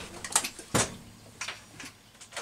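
A few short knocks and clicks, the loudest a little under a second in, as a Stihl 028 chainsaw is picked up off a workbench.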